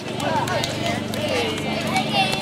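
Many young girls' voices talking over one another, with scattered sharp slaps of hands meeting as two lines of players pass each other.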